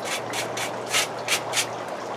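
A hand brush swept in quick, short strokes over a fake gas fireplace log, dusting it off: five or six strokes at about three a second, stopping shortly before the end.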